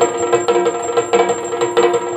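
Yakshagana background ensemble playing for a dance: maddale barrel-drum strokes in a quick, even rhythm with bright metallic strikes, over a steady held drone.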